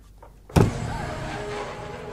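Cartoon soundtrack sound effects: a sudden sharp hit about half a second in, then a sustained steady sound with several held tones under a noisy haze.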